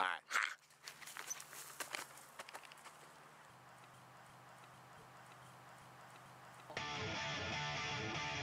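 A brief voice at the start, then a few seconds of faint noise with scattered clicks, before a punk rock band with electric guitars starts playing loudly, suddenly, about seven seconds in.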